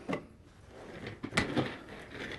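Light handling sounds at a desk: a few soft knocks and rustles, the loudest cluster about one and a half seconds in.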